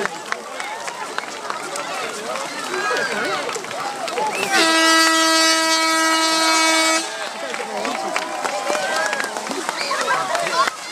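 A horn sounds one long, steady blast of about two and a half seconds, starting about four and a half seconds in, over the chatter of a crowd.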